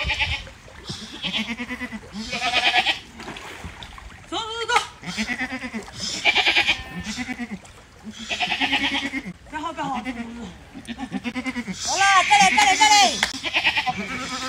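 A herd of goats bleating over and over, one call after another every second or two, the loudest bleats near the end, as they wade chest-deep in floodwater.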